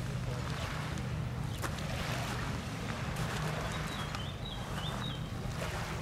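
Low steady drone of a boat engine running out on the lake, with a few short high chirping notes about four seconds in.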